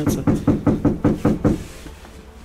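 A fist knocking on a closed door: about nine quick, evenly spaced knocks that stop about one and a half seconds in.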